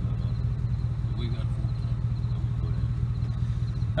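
Steady low rumble of a vehicle engine idling.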